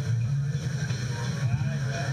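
A steady low rumble with faint voices talking over it.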